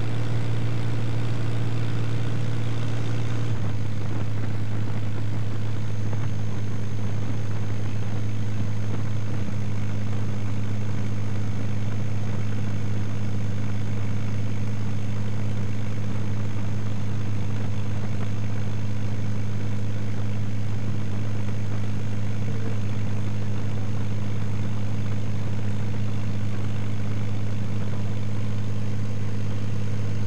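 Light propeller aircraft engine droning steadily in flight, its pitch shifting slightly about three and a half seconds in.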